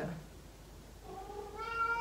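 A domestic cat meowing: one long meow starting about a second in.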